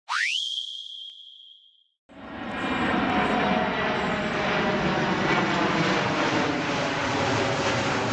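Intro logo sound effect: a quick rising glide that settles into a held high tone and fades over about two seconds. After a brief silence, a dense, steady rushing noise swells in about two seconds in and carries on unbroken.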